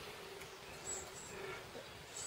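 Faint handling sounds of the wavy oil-ring expander being worked by hand into the ring groove of an aluminium piston, over a low steady hum, with a few tiny high ticks.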